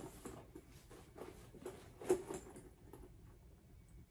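Faint rustling and soft clicks of a Loungefly mini backpack and its straps being handled as it is put on, the loudest rustle about two seconds in.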